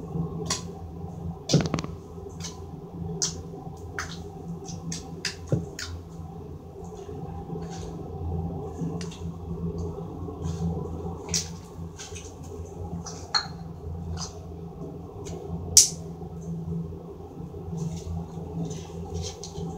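Glitter slime being poked, pressed and stretched by hand: irregular wet clicks and pops, a few sharper ones standing out, over a steady low hum.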